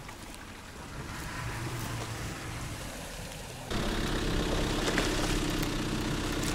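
Soft low rumbling for the first three and a half seconds, then, abruptly, a vehicle engine idling steadily and louder, with an even hum.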